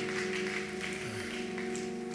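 Soft live worship-band music: a sustained chord held steady under a pause in the preaching.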